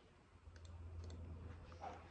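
A few scattered, soft clicks of laptop keys being pressed, the last one a little louder, over a faint low hum.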